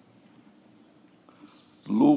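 Quiet room tone with a soft click, then a man's voice starting loudly just before the end.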